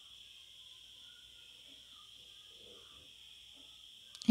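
Near silence: room tone with a faint, steady high-pitched drone.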